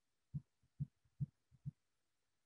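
Four soft, low thumps, evenly spaced a little under half a second apart, with near silence between them.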